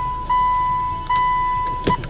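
An electronic warning beep sounding in a car's cabin: two long, steady, high beeps, each a little under a second, with short breaks between them, then a sharp click near the end.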